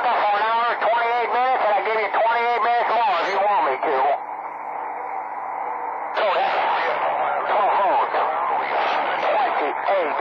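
Distorted, hard-to-make-out voices received over a two-way radio. About four seconds in the voice drops out to a stretch of radio static hiss, and another transmission comes in about two seconds later.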